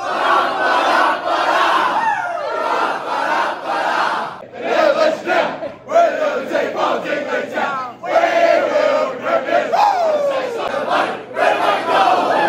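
A team of men with arms linked, singing their club's victory song together after a win, loudly and more shouted than sung, in phrases broken by short pauses.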